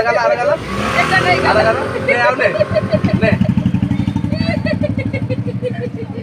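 An engine running with a steady low throb, coming in about a second in and growing stronger, under people's voices.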